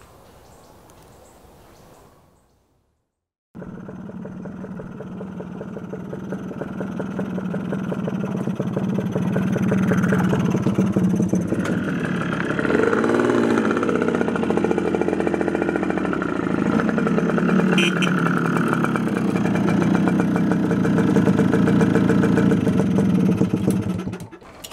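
A small motorcycle engine comes in suddenly about three and a half seconds in and runs under load, growing louder as it approaches. The pitch swings up and down once around the middle, and the engine stays loud until it cuts off at the end.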